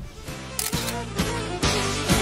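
Background music with camera shutter clicks over it, about two a second, as a portrait shoot gets under way.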